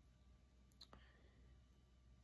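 Near silence: room tone with a faint low hum, and a couple of faint quick clicks just under a second in.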